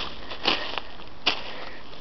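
Footsteps on snow-covered ground: a few separate steps, roughly one every three-quarters of a second, over a steady outdoor background.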